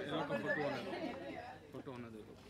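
Several people talking over one another in indistinct chatter, growing quieter near the end.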